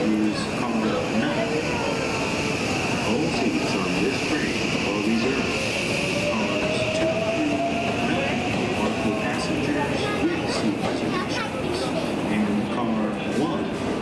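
An electric train runs on a nearby track, its motor whine rising in pitch near the middle, over a steady high-pitched hum and the murmur of voices on a busy station platform.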